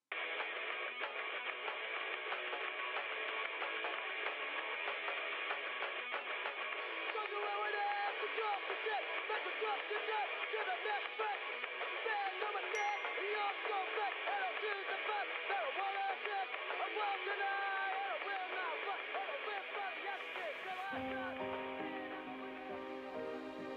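A dense, thin, radio-like wash of many overlapping voices, none of them clear. Sustained music notes come in near the end.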